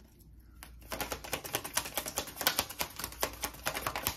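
A tarot deck being shuffled by hand: a rapid, uneven run of crisp card clicks, starting about half a second in.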